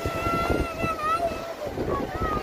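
A child's voice holding one long, high call for about a second and a half, dipping in pitch as it ends, over wind buffeting the microphone and the wash of small surf.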